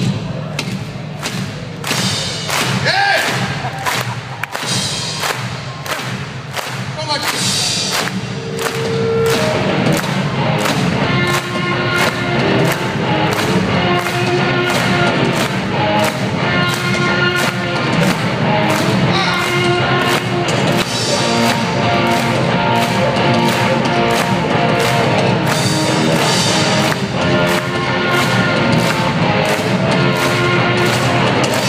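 Live rock band in an arena: a steady bass-drum beat on its own, then about ten seconds in the electric guitars and the rest of the band come in and play on loudly.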